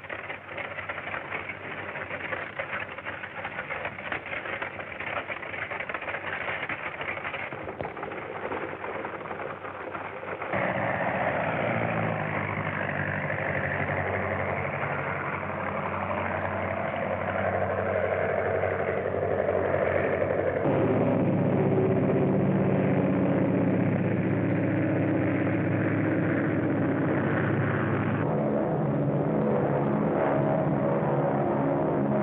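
Motor engines running, the sound changing abruptly in steps and getting louder from about ten seconds in.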